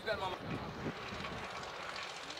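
Steady, even drone of a distant engine, such as a passing aircraft.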